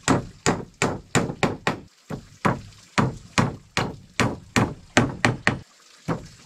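Hammer nailing the joints of a wooden cabinet frame: sharp strikes on wood at about three a second, with two brief pauses, one about two seconds in and one near the end.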